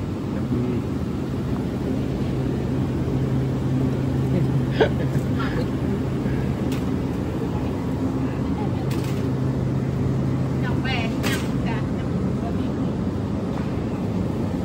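Supermarket background: a steady low hum from the store's equipment, with scattered voices and a few sharp clicks and clatters. The hum cuts out about two seconds before the end.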